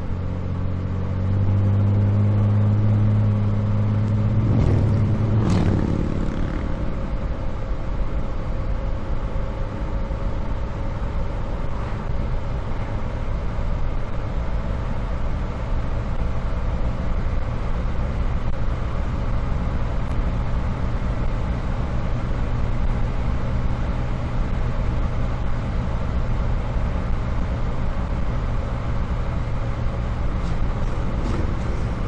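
1965 Chevrolet Corvair's rear-mounted, air-cooled flat-six engine running on the move, heard from a microphone at the back of the car, with tyre and road noise. The engine note is louder for a few seconds near the start, changes about five seconds in, then runs on steadily.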